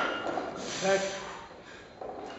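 A man calls out one short word, "back," a little before a second in, over a quiet gym. A brief breathy hiss comes just before it.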